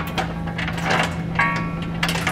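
Light metallic clicks and knocks as a steel trailer hitch is held up against the vehicle frame and its pull wires are fed through the mounting holes, with a brief ringing tone about a second and a half in, over a steady low hum.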